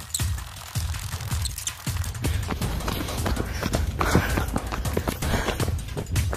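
Wind rumbling on a handheld phone's microphone, with repeated thumps and knocks from a person running with the phone.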